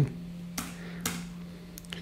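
A few light clicks of laptop keys being pressed, over a steady low hum.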